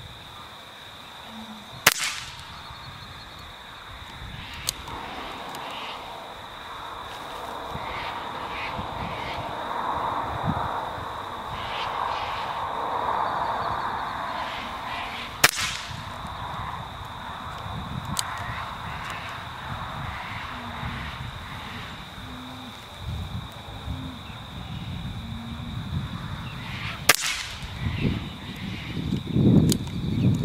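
BSA Scorpion .22 PCP air rifle fired three times, each shot a sharp crack, about 13 and then 12 seconds apart. Near the end there is handling noise as the rifle's action is worked for the next shot.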